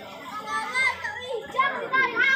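Children playing and shouting in high voices over the chatter of a crowd of bathers, the shouts getting louder about half a second in.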